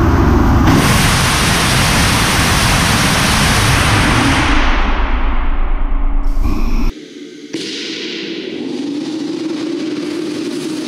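DHX-400 'Nimbus' hybrid rocket motor firing on a test stand: a loud, even exhaust hiss that starts at ignition and loses its high end from about four and a half seconds in. It breaks off abruptly about seven seconds in, and after about half a second a steadier rocket exhaust hiss with a low steady hum carries on.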